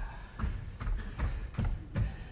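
Heavy barefoot footsteps on a stage floor: about six dull thuds, evenly spaced at roughly two and a half a second, as a man strides across the stage.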